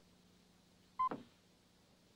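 Faint room hiss, broken once about a second in by a short vocal sound from the man eating, a quick sound that falls steeply in pitch.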